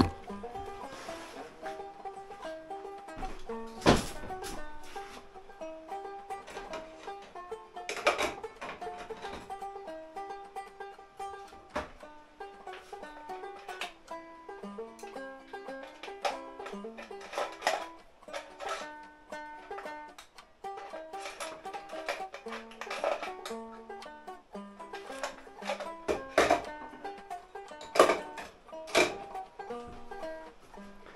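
Banjo music, a picked melody, playing throughout, with a few sharp clicks and knocks from handling tools and parts on a workbench.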